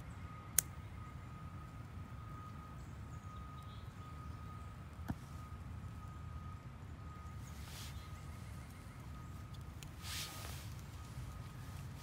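Mini Bic lighter being struck to light Esbit solid-fuel tablets in a pocket stove: one sharp click about half a second in, a smaller click mid-way, and short hissy strikes later on. Underneath are a low rumble of distant city noise and a faint steady high tone.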